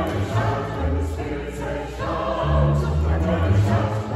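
Mixed choir of men's and women's voices singing a sacred choral piece, accompanied by a plucked upright double bass.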